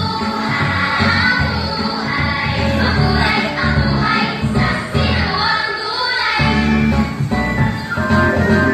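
Recorded dance song with sung vocals and a steady beat, playing loudly. The bass drops out for a moment about six seconds in, then the beat comes back.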